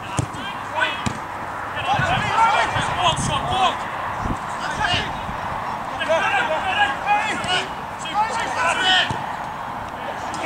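Footballers' shouts carrying across an open pitch during play, with a few sharp thuds of the ball being kicked.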